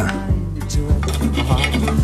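Knife and fork scraping and clicking on a plate as a crepe is cut, over background music with steady low notes.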